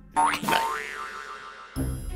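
Cartoon boing sound effect: a sudden springy tone whose pitch slides up and wobbles, fading away over about a second. Music starts again near the end.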